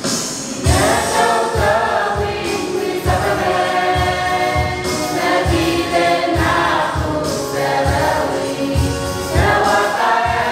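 Mixed group of young voices singing a hymn together, starting about half a second in, over a steady low beat.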